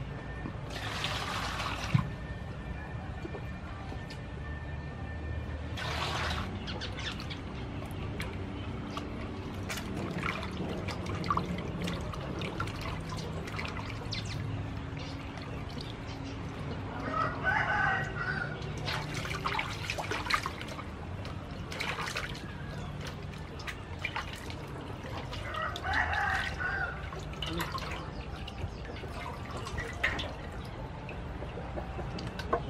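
Water splashing and sloshing as a whole plucked chicken is washed by hand in a metal basin, with water poured in from a bowl near the start. A rooster crows twice in the background, in the second half.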